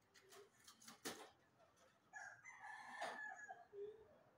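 A rooster crowing faintly once, a drawn-out call in the second half, after a few sharp clicks near the start.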